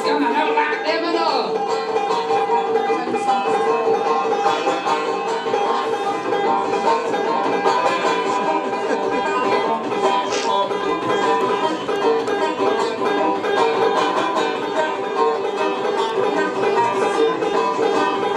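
Five-string banjo picked in an instrumental passage, a steady, continuous run of plucked notes.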